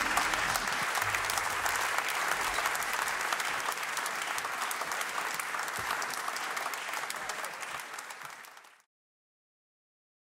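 Audience applauding after a live jazz set: dense, even clapping that fades away and stops about nine seconds in.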